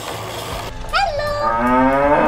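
A cow mooing: one long, loud moo beginning a little over a second in, after a steady hiss.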